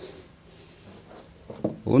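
Faint room noise in a pause in a man's speech; his voice starts again near the end.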